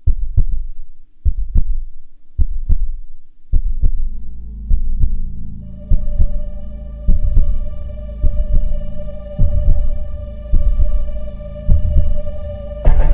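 Cinematic heartbeat sound effect: pairs of deep thumps repeating about once a second. A low drone joins after a few seconds, and a held synth chord of steady tones comes in about halfway.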